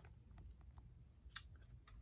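Near silence: room tone with a few faint, short clicks, the clearest about one and a half seconds in.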